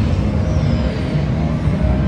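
Casino floor din: a steady low rumble of machines and crowd, with a faint falling electronic tone from a machine about half a second in.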